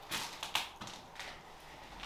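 A few soft taps and rustles in a quiet room, three or four short strokes in the first second or so, then a faint hiss.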